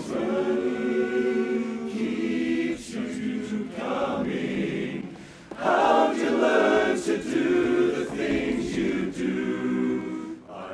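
Men's barbershop chorus singing a cappella in close harmony, holding chords. The sound dips briefly about five seconds in, then comes back louder.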